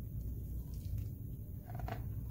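Faint rustle of a picture book's page being turned, clearest near the end, over a low steady hum.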